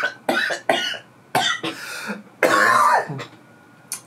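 A man coughing and clearing his throat in a run of short bursts.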